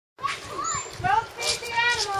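Young children's high-pitched voices, calling out and chattering.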